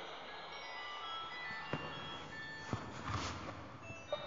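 Faint, scattered chime-like tones at shifting pitches over a low hiss, with a few soft clicks.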